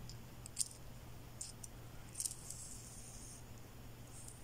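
Faint small clicks of a beading needle against glass seed beads, then a soft hiss of beading thread being drawn through the beads and brooch backing for about a second, starting about two seconds in.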